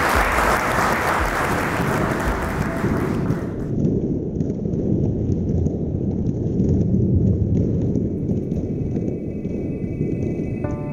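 Audience applauding, cut off abruptly about three and a half seconds in; then a low, steady rumbling noise, with faint held tones coming in near the end.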